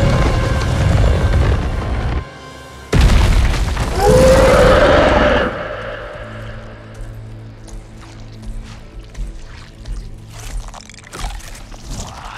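Film score and sound effects: loud booming music that dips about two seconds in, then a sudden loud boom about three seconds in that stays loud for a couple of seconds. After that it falls to a quieter low steady drone with scattered clicks and crackles.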